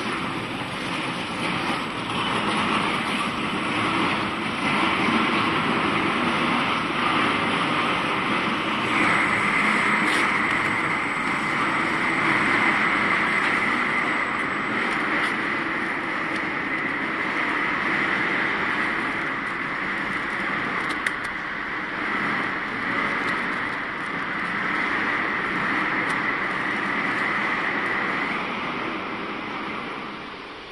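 Pillow-type flow-wrapping machine for nursing pads running: a steady mechanical din, with a higher steady tone joining about nine seconds in and holding until near the end.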